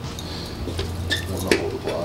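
A few light metallic clicks and taps as an aluminium rear main seal housing is pushed and worked onto the pins of a Toyota 4AGE engine block by hand, with a low steady hum underneath.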